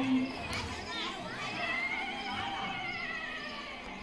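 Women singing a devotional song: a close, loud voice ends a moment after the start, then fainter high notes are held and slowly fall, with other voices from the crowd.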